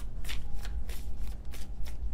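A tarot deck being shuffled by hand: a run of short, uneven card snaps and flicks.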